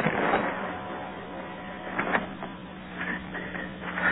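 A blank fired from a Remington 10-gauge starter cannon, heard over a telephone line: a single short bang that sounds like a door slamming, over steady line hiss and hum.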